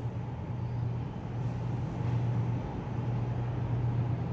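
A steady low hum over even background noise, with no distinct events.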